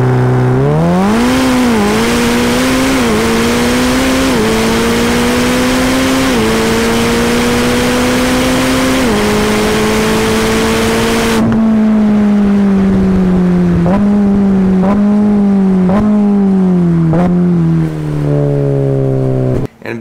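Ferrari F8 Tributo's twin-turbo V8 heard from inside the cabin on a launch-control run. The engine note climbs hard through five quick upshifts. About halfway through the throttle lifts, and the engine runs down through the gears with a short rev blip on each downshift.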